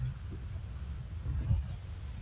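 Low steady background rumble from an open call microphone, with a faint knock about one and a half seconds in.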